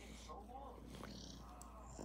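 Faint, soft coos and breathy sounds from a toddler held close to the microphone, two short quiet vocal sounds over low room hum.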